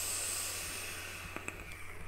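A long draw through an AS Vape A9 rebuildable dripping atomizer on an Evic Primo mod firing at 105 watts: a steady airy hiss of air and vapour that fades away near the end, with a couple of faint clicks about a second and a half in.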